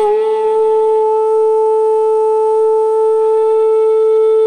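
Carnatic bamboo flute holding one long, steady note without ornament.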